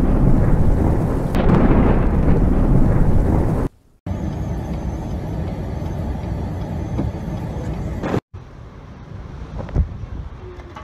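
Thunderstorm sound effect, a low rumble with rain, for the first three and a half seconds. After a brief cut it gives way to steady blizzard wind noise, which drops to a quieter wind after a second short cut about eight seconds in.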